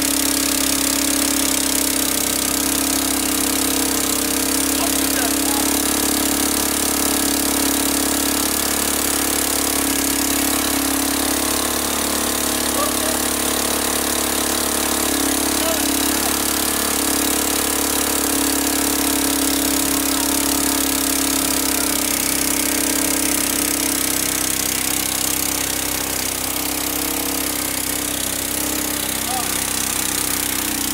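Small petrol engine of a portable generator, fitted with a Thunderstorm tube, running steadily at constant speed with an even drone.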